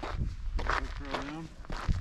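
A brief indistinct voice, with wordless sounds that glide in pitch about a second in, over hikers' footsteps on a dirt trail and wind rumble on the microphone.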